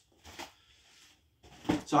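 A man talking, with a pause of about a second between his words. A faint short sound about half a second in.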